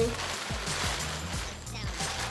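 A clear plastic garment bag crinkling as a romper is pulled out of it, over background music with a steady beat.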